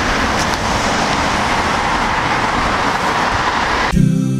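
Road traffic passing: a steady rush of tyre and engine noise.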